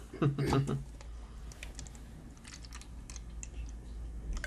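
Scattered faint clicks and light taps of an aluminium beer can being handled.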